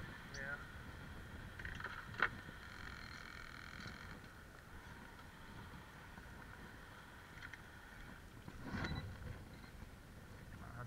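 Wind rumbling on the microphone over water lapping around a small boat on a choppy sea, with a single sharp knock about two seconds in.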